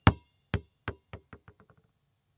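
A basketball bouncing on a hard floor and settling: sharp bounces that come quicker and quieter, about seven of them, until they die away.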